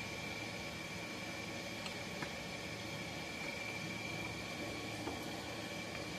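Air compressor running steadily in the background as a low even hum and hiss with a faint high tone, with a couple of faint clicks of small engine parts being handled about two seconds in.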